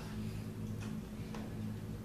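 Pause in speech: room tone with a steady low hum and two faint ticks a little under a second apart.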